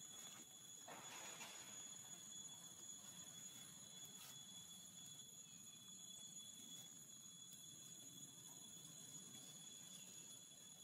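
Near silence: a faint background hiss with thin, steady high-pitched tones, a soft brief rustle about a second in and a faint click about four seconds in.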